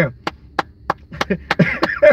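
One person clapping hands in a steady rhythm, about three claps a second, with laughter near the end.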